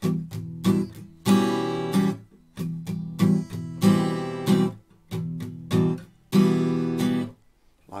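Acoustic guitar strumming an E minor pattern: the first beat rings out, followed by a run of short dampened strums, the cycle repeating about every two and a half seconds.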